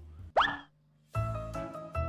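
A quick upward-sliding sound effect about a third of a second in, then a brief silence. Music with a bass line starts just past the halfway point, as a title card comes up.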